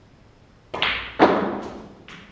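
Snooker shot: a sharp clack as the cue strikes the cue ball, then a louder ball-on-ball knock about half a second later, followed by two lighter clicks near the end as the balls run on and a red is potted.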